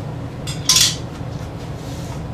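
A short glass clink of laboratory glassware being handled on a table, loudest just under a second in, with a fainter tap just before it. A steady low hum runs underneath.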